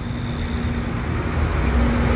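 Busy city road traffic: a steady low rumble of engines and tyres, with an Isuzu city bus driving past close by, its engine giving a steady low hum and the rumble swelling toward the end as it comes alongside.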